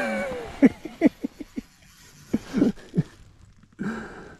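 A man's voice: a falling cry at the start, then a string of short grunting laughs and gasps, his reaction to ice-cold water as he reaches into the fishing hole.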